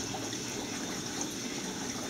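Steady rushing, water-like noise from a wet bench, even and unchanging, while its cassette-handling robot homes.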